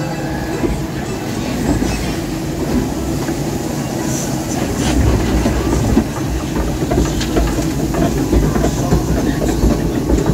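A log flume boat rides the lift hill conveyor with a steady mechanical clatter, over rushing water. The rattling grows louder and clickier about halfway through as the climb gets under way.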